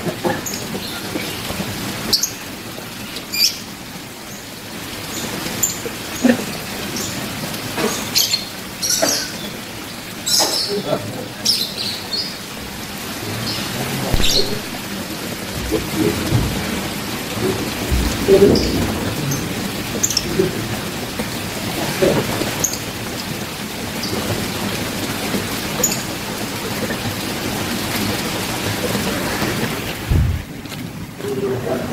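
Steady rain falling, an even hiss, with scattered short clicks and knocks.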